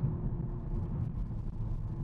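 2021 Honda Civic Type R's turbocharged four-cylinder engine and tyres heard from inside the cabin while driving: a steady low rumble with a faint steady hum.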